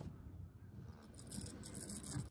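Faint scratching of a pen drawing lines on paper, over a low background rumble.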